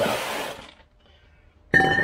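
A cast-iron brake disc rotor set down with a loud metallic clank that rings on with a high tone, near the end.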